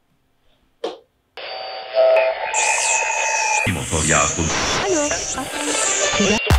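Radio tuning through stations: a short falling blip, then static with steady whistling tones that change as the dial moves, then snatches of music and voices.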